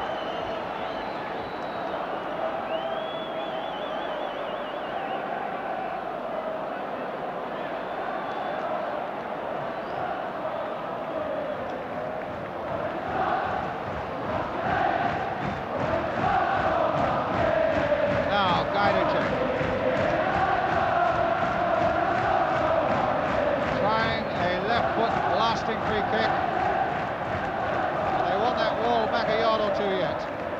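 Stadium crowd at a football match: a steady din of many voices that swells about halfway through into louder chanting and singing.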